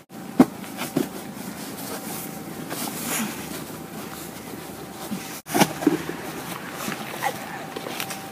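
A short scuffle over a gift box: handling knocks and rustling, with a sharp knock about half a second in and a few brief vocal sounds. The sound drops out for an instant twice, at edit cuts.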